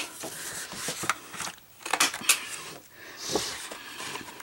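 Paper rustling with a few sharp clicks as the corners of cardstock flaps are cut with a heavy-duty corner chomper punch.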